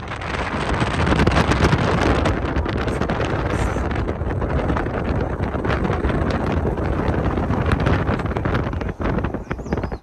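Wind rushing and buffeting over the microphone at the open window of a moving car, with the car's low road noise underneath. It starts suddenly and runs on with a heavy, uneven rush.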